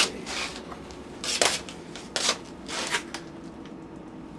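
Leftover pasta being moved from a plastic food container onto a plate: a few short scraping, rustling handling noises, the first a sharper click.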